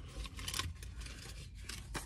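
A pen scratching on paper in a few short strokes, as a quick note is written down.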